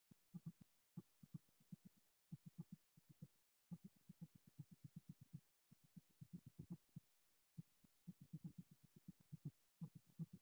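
Near silence with a faint low pulsing, about eight throbs a second, broken by several brief dropouts to dead silence.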